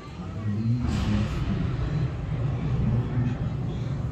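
An indistinct, muffled low-pitched man's voice over a steady low rumble.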